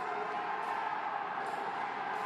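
Steady background ambience of a boxing arena on a broadcast feed: an even, continuous hum of room and crowd noise with no distinct impacts or voices standing out.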